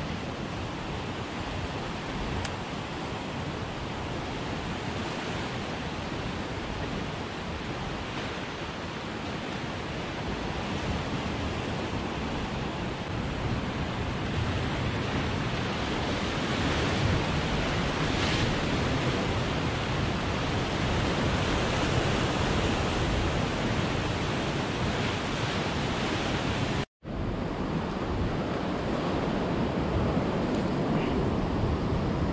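Ocean surf surging and breaking against the rocks below, a steady rush with wind on the microphone, growing somewhat louder about halfway through. The sound cuts out completely for an instant near the end.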